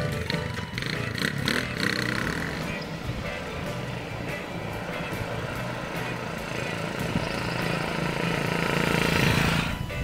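Motorcycle engine running as the bike rides off, then a steady road-traffic noise that swells near the end as a vehicle passes. Background guitar music fades out early.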